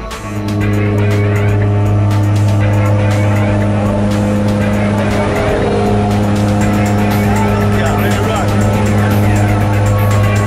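Steady, loud drone of a twin-engine propeller plane's engines and propellers heard from inside the cabin during the climb, coming in suddenly about half a second in.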